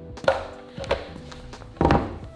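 Background music with a couple of sharp knocks, then a louder thump near the end.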